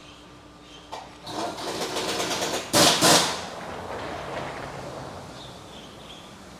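Air-powered tool in a car workshop: about a second and a half of rapid rattling, then two loud sharp blasts close together, fading away.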